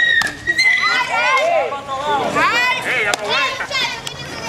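A crowd of children's voices calling and chattering, high-pitched and overlapping, with two brief sharp smacks, one right at the start and one about three seconds in.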